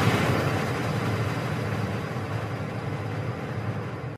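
Electronic logo-intro sound effect: a noisy, rumbling wash left over from the opening stinger hits, fading slowly.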